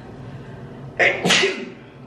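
A woman sneezing once, a sharp, loud sneeze in two quick bursts about a second in.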